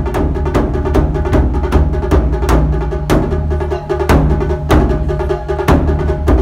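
Japanese taiko drums played by several drummers: a fast, dense run of stick strikes on the drumheads, with louder accented strikes every second or so over a deep drum rumble.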